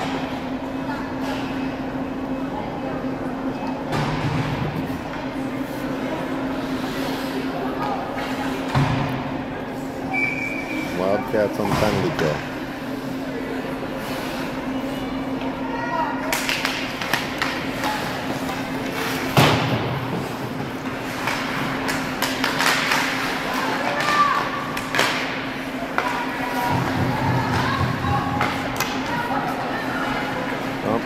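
Indoor ice hockey rink during a stoppage and faceoff: a steady hum runs under scattered knocks and thuds, with voices calling out and a brief high whistle-like tone about ten seconds in. From about sixteen seconds, when play restarts off the faceoff, the sound gets busier with skates scraping the ice and sticks and puck clattering.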